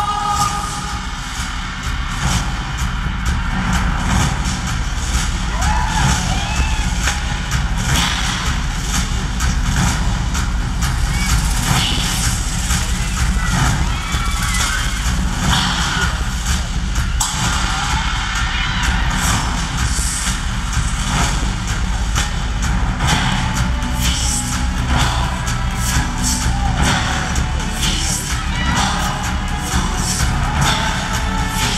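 Loud amplified live band playing an instrumental dance break with a heavy, driving beat.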